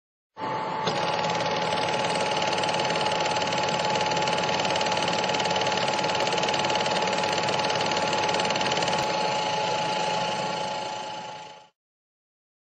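A steady, fast mechanical clatter with a held hum running through it. It starts suddenly and fades out near the end.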